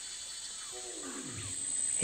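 Steady high-pitched drone of rainforest insects, with a single drawn-out call that slides down in pitch a little under a second in.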